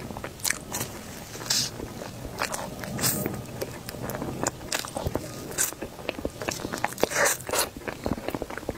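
Close-miked eating sounds from a matcha crepe cake: bites and chewing, with many short mouth clicks and smacks and a few longer noisy bursts.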